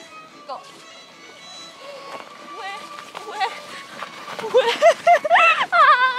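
A young woman crying out 'łe' and squealing in fright as she slides down a snowy slope on her backside. Her cries get loud and high-pitched in the last second and a half.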